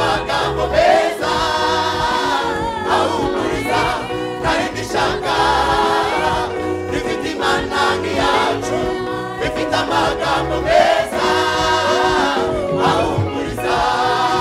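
A Rwandan women's gospel choir singing together with live band accompaniment, with a steady beat under the voices.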